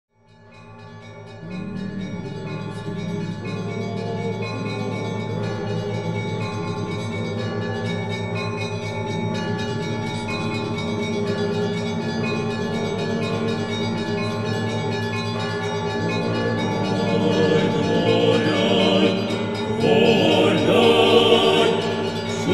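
Choral music with bell-like tones, fading in at the start; the singing swells near the end.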